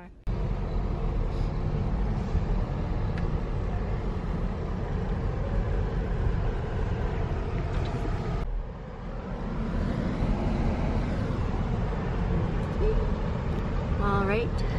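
Steady low rumble of a car's engine and tyres heard from inside the cabin as it drives slowly, with a short drop in level a little past halfway.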